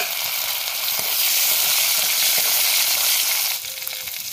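Chillies and spices frying in hot mustard oil in a wok: a steady sizzle that swells loud about a second in and eases back near the end, with a short knock at the very start.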